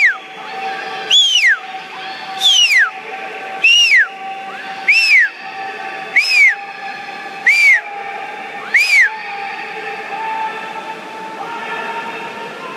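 Loud, shrill whistling from the stands: seven short blasts, each rising then falling in pitch, repeated in an even rhythm about every 1.3 seconds and stopping about three seconds before the end, cheering on swimmers in a butterfly race. Under it is the steady hum of a pool hall.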